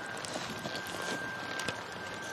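Outdoor wind noise on the microphone with faint, irregular hoof falls of a horse trotting on soft dirt, over a thin steady high whine.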